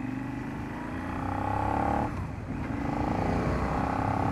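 Motorcycle engine running as the bike rides along the road. It climbs slightly and grows louder for the first two seconds, dips briefly just after two seconds in, then runs on steadily.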